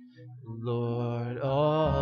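Worship band music: after a brief lull, a sustained low note and a held, slowly bending melody come in about half a second in.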